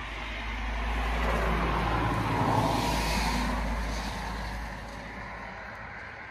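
A road vehicle passing by, its sound swelling to a peak about halfway through and then fading away.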